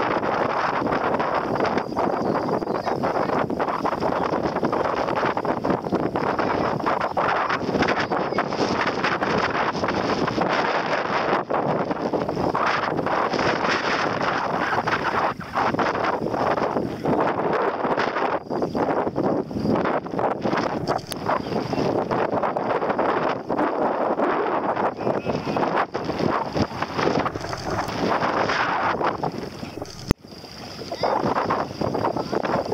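Wind blowing across the microphone, a loud, steady rushing noise.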